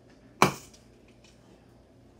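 A single sharp knock from a lever-operated clay extruder as its long handle is forced down to drive the plunger and push clay through the die, followed by a few faint ticks.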